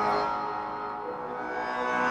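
A sampled synth loop from Output Arcade's Aura kit, played from a MIDI keyboard: a shimmering, sustained chord with plucked tones, struck at the start and slowly fading, with a new chord struck right at the end. The key held on the keyboard sets the pitch the loop plays in.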